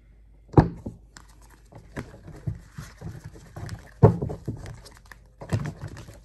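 A tarot deck shuffled by hand: cards rustling and clacking together, with several sharper taps, the loudest about four seconds in.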